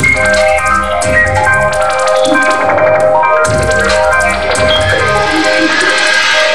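Synthpop band playing live: held synthesizer chords over a drum-machine beat, with fast, bright hi-hat ticks.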